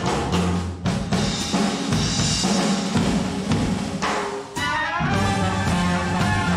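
A traditional jazz band's drum kit takes a short break: snare, bass drum and cymbal strokes in place of the horns. The full band with brass comes back in about five seconds in.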